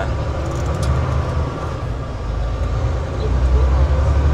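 Semi-truck engine and road noise heard inside the cab: a steady heavy low rumble that grows louder near the end as the truck pulls away from a turn.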